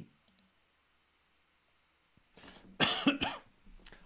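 A person coughing: a few short coughs in quick succession, about two and a half seconds in.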